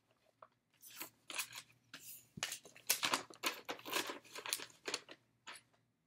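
Rustling and crinkling of stiff cross-stitch fabric and project materials being folded and handled, in an irregular run of short crackles.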